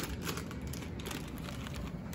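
Plastic bag crinkling and rustling in the hands as flour is poured from it into a plastic mixing bowl: a soft, rapid crackle of small ticks.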